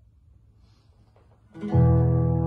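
Faint hiss at first; about a second and a half in, an acoustic guitar and a keyboard start playing a held chord, opening a song.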